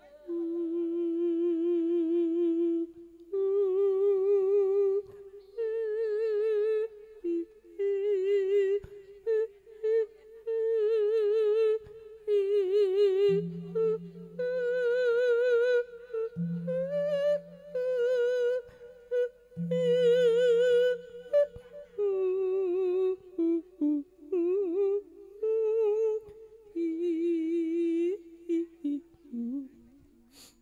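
A monk's solo male voice singing an Isan thet lae sung sermon into a microphone: long held, melismatic phrases with heavy vibrato, separated by short breath pauses.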